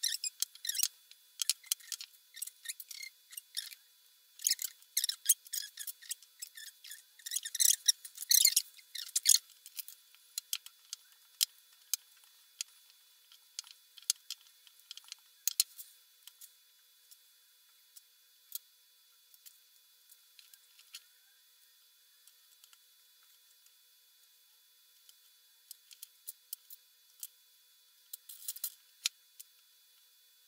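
Wooden rolling pin rolling out shortbread dough on a silicone baking mat: a dense run of rubbing and clicking for about the first nine seconds. Then sparse single clicks as metal cookie cutters are pressed into the dough and lifted, with a short burst of clicks near the end.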